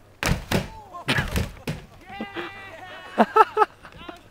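Several hard thuds in the first two seconds, mini-skis landing on the plastic roof of a portable toilet, followed by people laughing and whooping.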